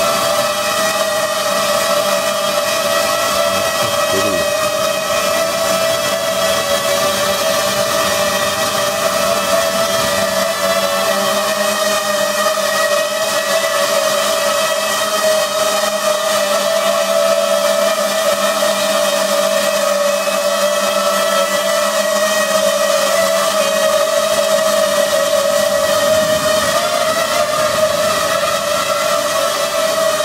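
Small quadcopter drone's electric motors and propellers whirring in flight, a steady high-pitched whine that wavers slightly in pitch.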